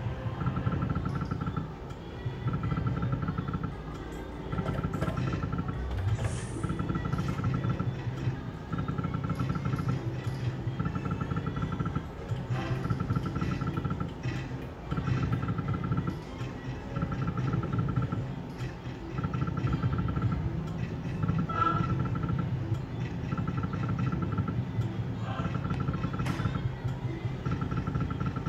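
Novoline Book of Ra Magic slot machine's electronic reel-spin sounds, repeating spin after spin about every two seconds, each spin carrying a short high pulsed tone.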